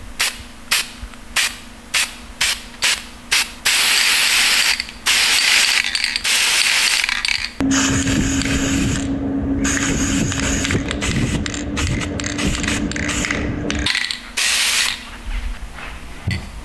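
Aerosol spray-paint can hissing, first in a quick run of short spurts and then in longer sprays. A steady low hum lies under the hiss through the middle of the stretch.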